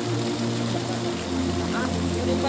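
A steady low mechanical hum that drops a little in pitch just past a second in, with faint voices over it.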